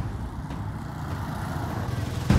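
Road traffic passing: cars and a motorbike going by, a steady low rumble.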